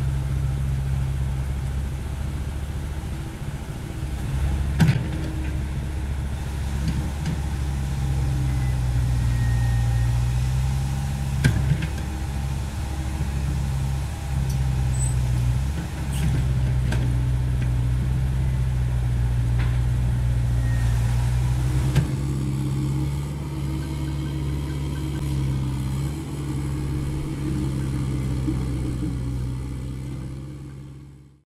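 CAT 307E2 mini excavator's diesel engine running steadily, with a few sharp knocks spread through.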